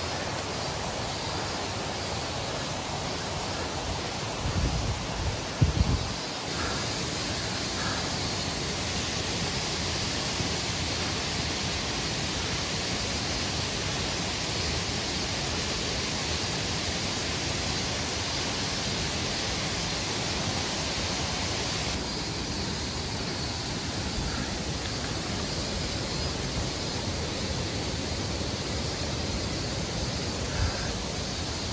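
Mountain stream rushing over rocky cascades: a steady hiss of running water. A few low thumps break in about five seconds in.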